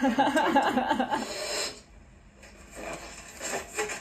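A woman laughing for about the first second and a half, then much quieter, with faint rustling sounds.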